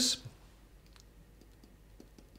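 A few faint, light clicks at irregular intervals, following the tail of a spoken word at the very start.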